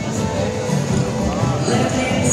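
Live contra dance band playing a steady, beat-driven dance tune in a large hall.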